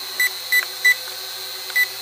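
A toy drone's handheld transmitter beeping: three short high beeps about a third of a second apart, then a pause and a fourth near the end, the beeping that goes with its flip button being used. A faint steady hum runs underneath.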